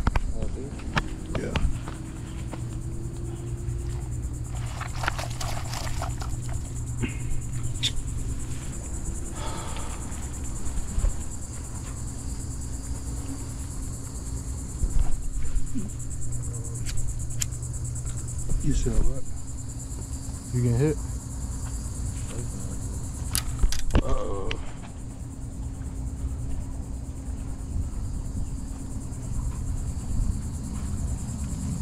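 Steady high-pitched insect buzzing, with a low rumble underneath and scattered sharp clicks and knocks from handling.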